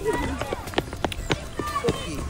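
Footsteps hurrying along a paved driveway, a sharp step about every half second, with voices talking over them.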